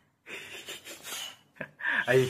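A small child making a breathy, unvoiced imitation of an animal sound in a couple of puffs, which the listener takes for a mouse's squeaking.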